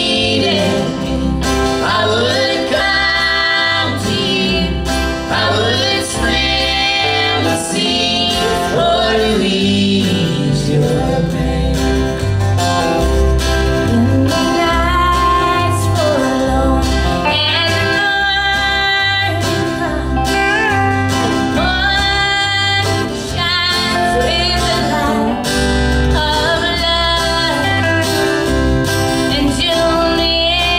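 Live country music: a woman singing lead over acoustic guitar, with low bass notes on a steady beat.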